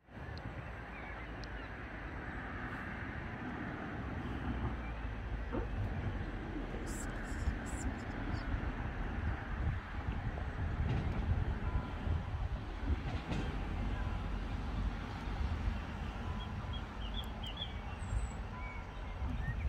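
Wind buffeting the microphone in uneven gusts over the steady rush of a fast, swollen, choppy river, with a few faint high chirps near the end.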